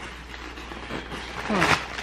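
Low steady hum under faint background noise, then a short vocal sound from a woman, rising in pitch, about one and a half seconds in.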